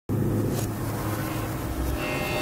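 Logo intro sound effect: a steady low rumble that starts suddenly at the very beginning.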